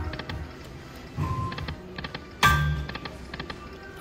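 Lightning Link poker machine playing its reel-spin sounds: a run of small clicking ticks as the reels turn, a short beep about a second in, and a louder electronic chime with a low thud about two and a half seconds in.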